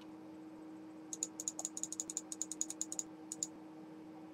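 A quick run of light computer clicks, about eight a second for roughly two seconds starting about a second in, then two more a little later, as the webcam view is stepped out from a close-up to a wide shot.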